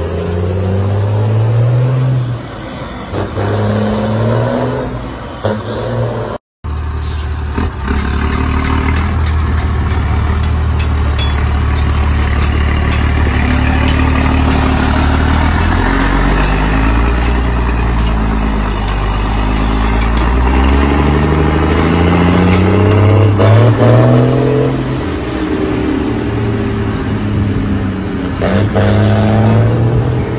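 Mercedes-Benz 1620 truck's diesel engine through a straight-through exhaust, pulling away and working up through the gears: the pitch climbs in each gear and drops back at each shift. The sound cuts out briefly about six seconds in.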